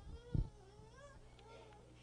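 A dull thump about half a second in, then a faint, high-pitched wavering vocal sound that glides up and down for about a second and a half.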